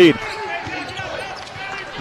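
A basketball being dribbled on a hardwood arena court, faint bounces over the low, steady noise of the arena crowd.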